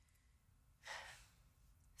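Near silence in a pause between lines, broken about a second in by one short, soft breath from a girl just before she speaks.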